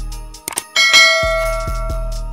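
A bright bell ding from a subscribe-button animation rings out about three quarters of a second in and slowly fades. It sounds over background music with a repeating bass line.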